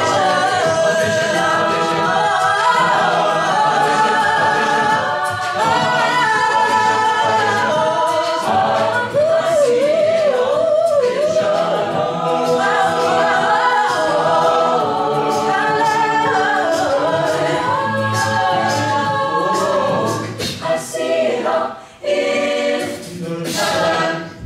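Collegiate a cappella group singing sustained multi-part chords under a lead voice, with a wavering lead line about ten seconds in. Near the end the voices drop back and clicking vocal percussion comes through.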